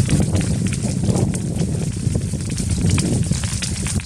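Wildfire burning through trees and undergrowth: dense crackling with many sharp pops over a steady low rumble.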